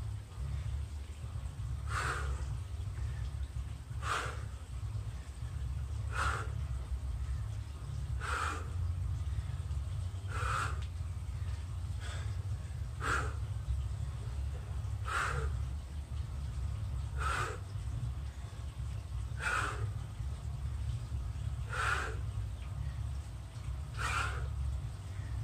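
A man's forceful exhalations during steel clubbell clockwork squats, one short breath with each rep, about every two seconds, over a steady low rumble.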